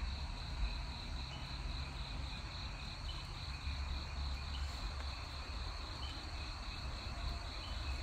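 Night insect chorus of crickets trilling steadily. A short higher chirp repeats about every second and a half over a low rumble.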